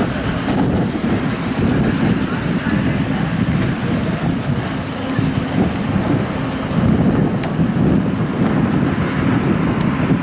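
City street traffic noise: a steady low rumble of passing vehicles, with indistinct voices.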